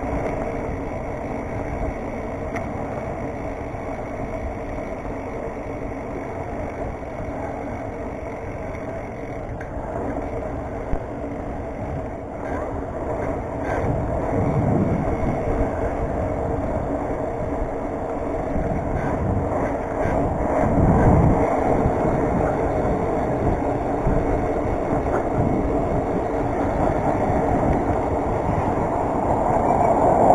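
Wind rushing over a handlebar-mounted action camera's microphone and the rolling noise of a BMX bike's tyres on a concrete sidewalk, with road traffic alongside. It swells a few times and grows louder near the end as a car approaches.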